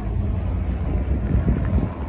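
Wind buffeting the microphone: a loud, steady low rumble over faint outdoor background noise.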